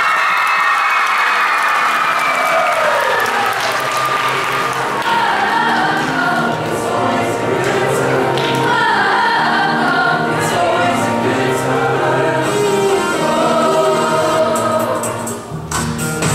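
Mixed youth show choir singing a pop-style number in harmony over instrumental backing with a steady bass line. The sound dips briefly near the end, then comes back in.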